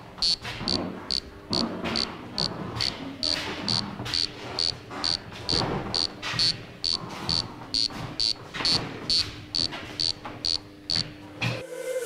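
Electronic guide for the visually impaired, a glasses-mounted ultrasonic obstacle sensor, giving short high-pitched beeps at an even rate of about two to three a second.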